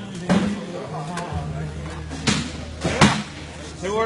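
Cornhole bean bags being thrown and landing on wooden boards: four sharp thuds, the loudest two about two and three seconds in.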